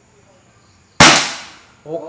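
A single shot from a PCP air rifle, a Predator Tactical with a 500 cc air tube, about a second in: a sharp crack that dies away over about half a second.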